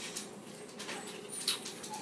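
Handling noise from a camera on a flexible tripod being adjusted: faint scattered clicks and rustles, with a sharper click and a short high squeak about one and a half seconds in.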